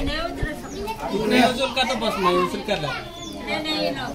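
A group of people talking over one another, several voices at once with no single speaker standing out.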